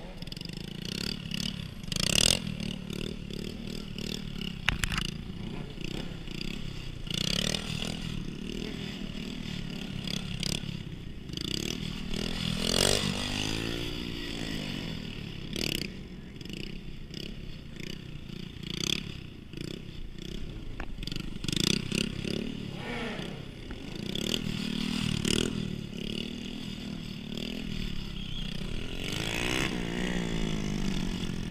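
Small stunt motorcycles running in short throttle bursts, the engine note rising and falling as the bikes are wheelied and ridden past. Several sudden loud revs stand out.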